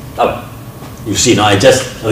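A man's voice talking in a lecture room, with a short pause before the words resume about a second in.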